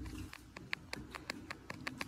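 A quick, irregular series of faint clicks, about a dozen in two seconds, over a low steady background hum.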